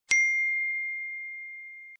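A notification-bell ding sound effect: one strike about a tenth of a second in, ringing on as a single clear tone that fades slowly for nearly two seconds, its fainter higher overtones dying away first, then cut off.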